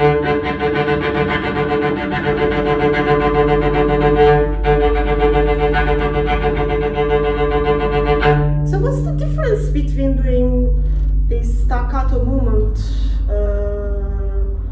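Cello played with staccato bowing: a fast run of short, detached bowed notes for about eight seconds, with a brief break a little after four seconds.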